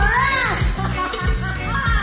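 Live reggae band music with a heavy bass line and a steady drum beat, over which a high voice swoops up and down in calls, once at the start and again near the end.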